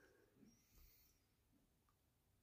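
Near silence: a faint breath about a second in.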